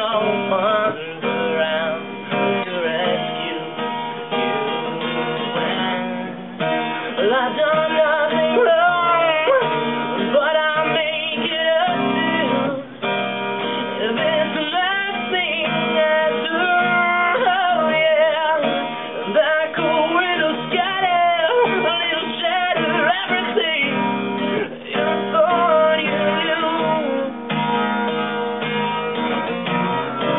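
A man singing to his own acoustic guitar, the guitar and voice going on without a break.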